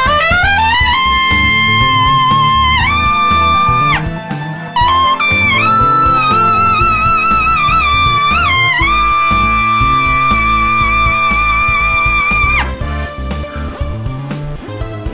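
Custom Olds Ambassador trumpet played in the upper register: a rip up into a high held note, a step higher, then after a short break a run of high notes with a shake. It ends on a long high note held for about four seconds that cuts off near the end.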